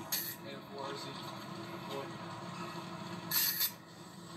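Muffled rustling and rubbing of clothing against a cell phone's microphone as the phone is jostled, with faint voices beneath it. A short hiss comes near the end.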